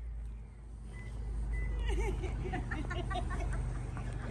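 A steady low outdoor rumble, with indistinct voices talking from about halfway through.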